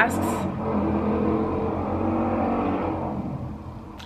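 Loud road vehicle going past on a city street, its steady engine drone fading away near the end.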